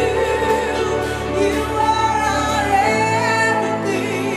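Live praise-and-worship music: singing with held, wavering notes over steady instrumental accompaniment.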